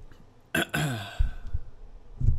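Handling noise from a desktop microphone on its stand being gripped and set in place: a sudden scrape about half a second in with a short sound falling in pitch, then a few low knocks.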